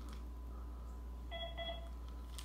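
A short electronic beep from a handheld device about 1.3 s in, two quick tones close together, each sounding several pitches at once like a telephone keypad tone, over a low steady hum.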